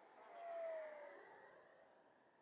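Faint whine of the FMS 70mm Viper Jet's electric ducted fan (1900kv setup) as the jet passes, the pitch sliding slightly down and the sound fading after about a second.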